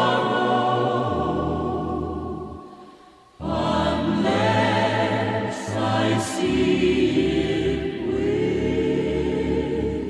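Trailer music with a choir singing long held chords over low held notes. The music fades away about three seconds in, then comes back in suddenly and carries on.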